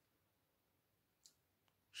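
Near silence, broken by one faint short click a little past halfway.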